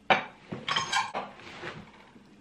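Glassware clinking and knocking on a desk: a sharp knock just after the start, then a short run of clattering clinks that dies away.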